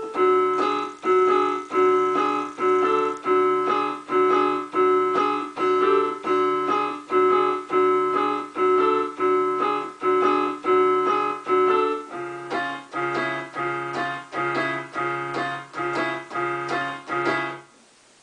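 Piano patch on a Korg M50 workstation keyboard playing a repeated chord riff in a steady pulse, which the player thinks is in seven. The harmony shifts to a lower bass note about twelve seconds in, and the playing stops just before the end.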